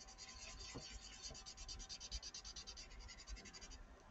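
Paper blending stump rubbing in small circles over graphite shading on sketchbook paper: a quick, steady rhythm of faint scratchy strokes that stops just before the end, smoothing the pencil strokes into even tone.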